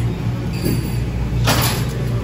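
Café room noise: a steady low hum with faint background voices, and a brief clatter about one and a half seconds in.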